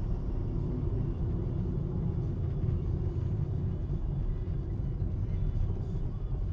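Steady low rumble of a moving car's engine and tyres on asphalt, heard from inside the cabin.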